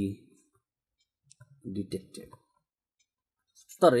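A man's voice in short pieces with pauses, and a few faint clicks of a stylus tapping on a writing tablet about a second and a half in.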